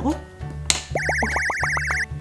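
Background music with a steady bass line, overlaid by a cartoon sound effect: a sharp click, then for the last second a warbling whistle and a quick run of rising boing-like sweeps.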